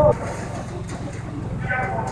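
Indistinct voices of people talking over a steady low rumble, with a short burst of speech near the end.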